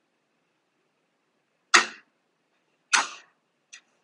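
A clapperboard clap heard twice, about a second apart: the camera's own audio and the separately recorded microphone track played back out of sync. Each clap is sharp, with a short ring of the room after it.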